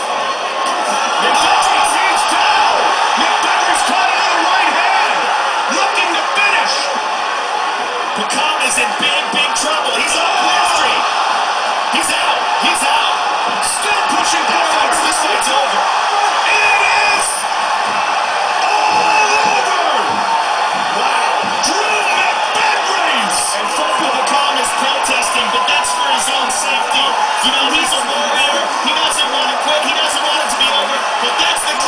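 Arena crowd cheering and yelling loudly and without a break as a fight is stopped, heard through a television's speaker.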